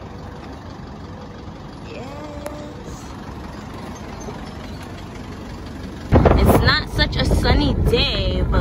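Steady road noise from a moving car in city traffic. About six seconds in, loud wind buffeting on the microphone starts suddenly, with a voice over it.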